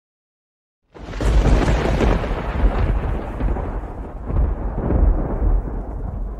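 Thunder: a sudden crack about a second in, then a loud, deep rumble that rolls on in swells and slowly eases.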